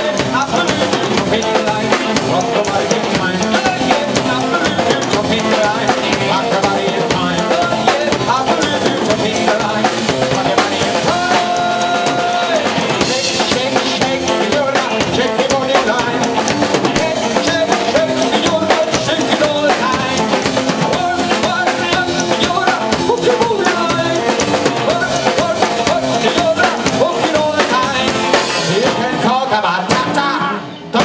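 Live blues-rock band playing an instrumental passage with a steady drum kit beat, bass drum and snare prominent, and no vocal line.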